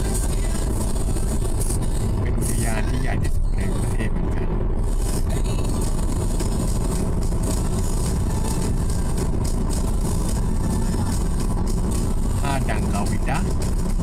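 Steady low rumble of road and engine noise heard from inside a moving car at cruising speed.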